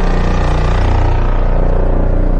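Cinematic intro sound effect: a loud, deep, steady drone under a brighter wash of sound.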